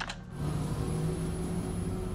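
Steady drone of a jet airliner in flight, heard as cockpit ambience, coming in about a third of a second in after a short click.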